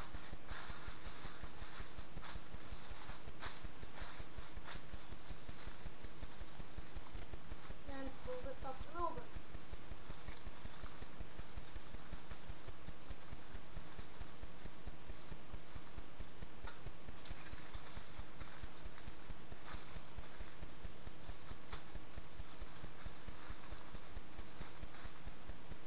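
Aluminium foil crinkling and crackling in short bursts as it is folded and crimped shut around a fish packet. It sounds mostly in the first few seconds and again later on, over a steady low pulsing background noise. A brief pitched sound comes near the middle.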